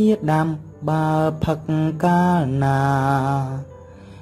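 A voice singing a Khmer-language children's song with a slow melody. About two and a half seconds in it holds one long, wavering note, then breaks off briefly near the end.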